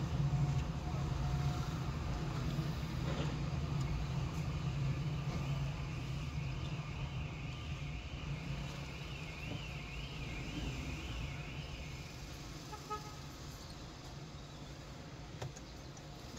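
Car driving slowly in city traffic, heard from inside: a steady low rumble of engine and tyres that eases off near the end. From about four seconds in to about twelve, a faint high tone warbles up and down, about twice a second.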